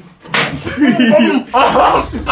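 A single sharp smack about a third of a second in, followed by voices.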